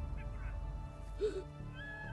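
A drama's background score with soft, sustained notes, a higher melody note entering past the middle. About a second in there is a brief vocal cry.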